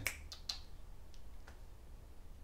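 A single finger snap about half a second in, sharp and short, followed by a couple of faint clicks.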